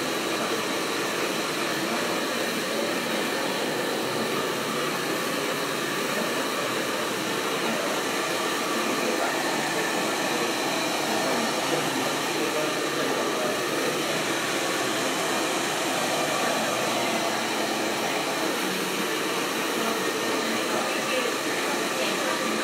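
Handheld hair dryer running steadily, blowing on a short haircut during blow-dry styling.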